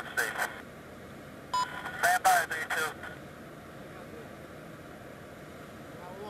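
Radio voice traffic with a short electronic beep about one and a half seconds in, then a steady low hiss.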